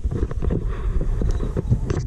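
Wind buffeting the microphone: an uneven low rumble with faint small knocks.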